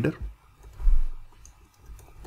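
Typing on a computer keyboard: a few light key clicks, with one short low thump about a second in.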